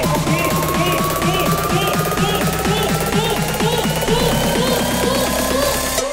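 Bass house electronic track: a dense beat with fast repeating synth notes under a tone that rises steadily in pitch.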